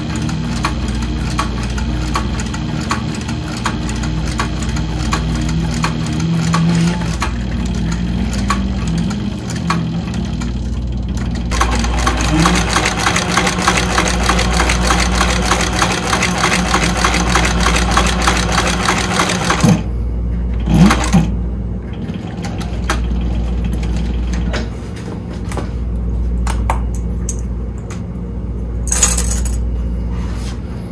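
Sewing machine stitching a leather seam: a steady motor hum under a fast, even run of needle strokes. The stitching is fastest and loudest from about a third of the way in until it stops about two-thirds in, with a couple of sharp clicks, then lighter stitching again.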